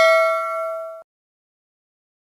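A bright chime sound effect for a notification bell, a few steady bell tones ringing out and fading, then cutting off suddenly about a second in.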